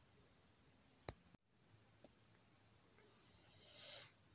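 Near silence: room tone, with one sharp click about a second in and faint rustling building up near the end.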